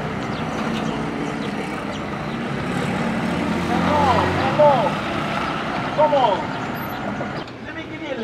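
Toyota Camry running as it rolls slowly along a dirt road and pulls up, a steady low engine hum that drops away about halfway through. A few short high calls rise and fall around the middle.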